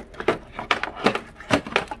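A handful of sharp metallic clicks and rattles from a brass quick-connect coupler as a white 40-degree pressure-washer nozzle is worked off it with one hand.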